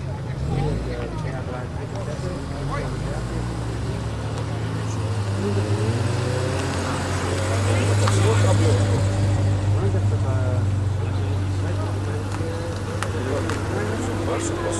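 A car engine running with a low, steady note that grows louder about halfway through and then eases off, while people talk in the background.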